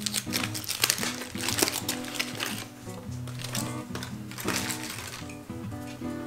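Background music, with aluminium foil crinkling over it through the first two seconds or so as a foil-wrapped baked potato is peeled open, and a brief crinkle again later.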